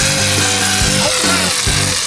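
Aerosol can of shaving cream spraying foam in a steady hiss.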